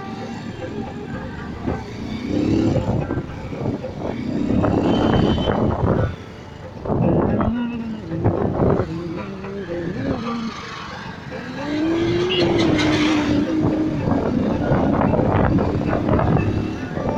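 Two-wheeler engine pulling away and gathering speed. Its pitch rises, holds and drops several times, as with gear changes.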